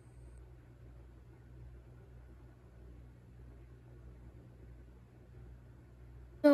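Faint room tone: a steady low hum under a quiet hiss.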